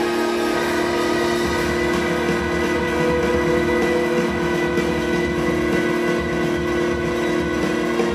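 Live orchestra with modular synthesizer: sustained string and synth notes held over a noisy, fluctuating low synthesizer rumble.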